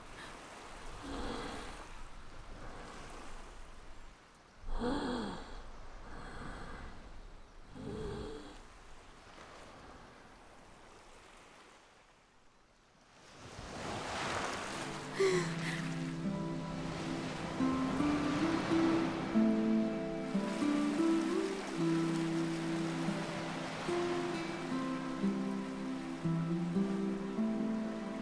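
A quiet beach: soft surf with a few small wordless sighs and gasps from a cartoon character. After a moment of near silence about halfway through, a wave washes in, and gentle orchestral film music with long held notes takes over to the end.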